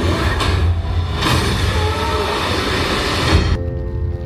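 Film trailer soundtrack played through cinema speakers: dramatic music under loud, dense rumbling sound effects. About three and a half seconds in, the rumble cuts off and leaves a quieter held chord.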